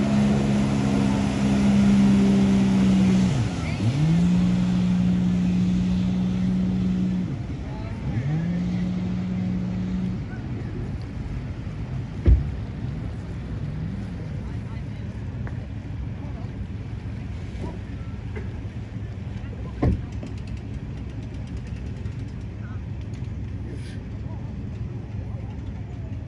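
Jet ski (personal watercraft) engine running at speed, its pitch dropping sharply and climbing back twice, then fading away about ten seconds in. Two short sharp knocks come later, several seconds apart.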